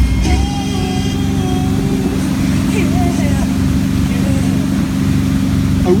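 Tow boat's engine running steadily under load, a low even drone, with water rushing from the wake.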